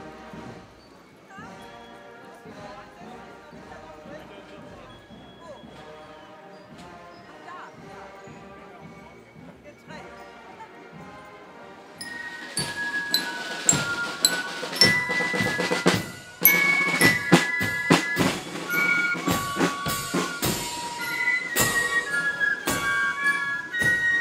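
Fife-and-drum marching band playing a march: fainter for the first half, then loud and close from about halfway, with heavy bass drum strikes under a high fife melody.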